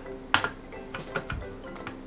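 Soft background music with steady tones, broken by a few light clicks of hard plastic being handled, the sharpest about a third of a second in, as a small plastic toy carrot is turned in the hand.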